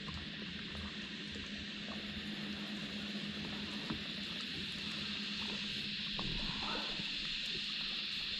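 Steady hiss of water around a small boat on a river, with a faint steady low hum and a few faint ticks.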